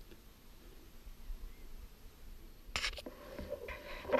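Mostly quiet with a faint low rumble, then a brief rustle of movement through grass and ferns about three quarters of the way in.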